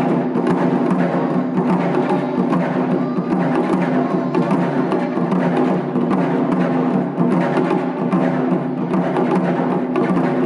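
Taiko ensemble drumming: several players beat Japanese taiko drums of different sizes with sticks, in a dense, driving rhythm without a break.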